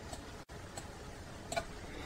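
Faint steady hiss with a few soft computer-mouse clicks at uneven intervals, the loudest about one and a half seconds in, as strokes are drawn in Paint. The sound cuts out very briefly near half a second in.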